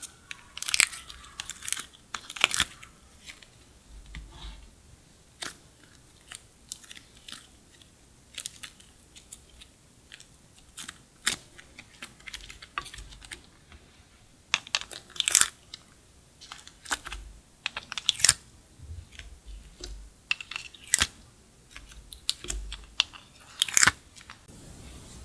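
Slime being kneaded and stretched by hand, making irregular sharp sticky clicks and crackling pops.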